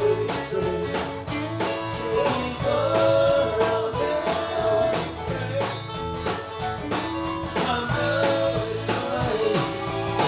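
Live band playing a song: a drum kit keeps a steady beat under electric guitar, with sustained, bending melody lines over the top.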